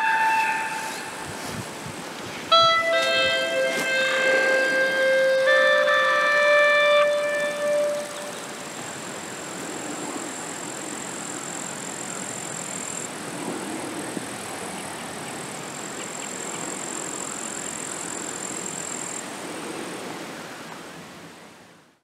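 Clarinet playing a short phrase of a few held notes about two and a half seconds in, answered by the natural echo from the surrounding forest, so the notes overlap and linger. After about eight seconds the playing stops, leaving outdoor background hiss with a faint high steady tone that fades out at the end.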